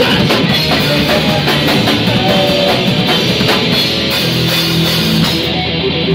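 Live punk rock band playing loud, with electric guitar and drum kit together. Near the end the drums and cymbals drop out and the guitar carries on alone.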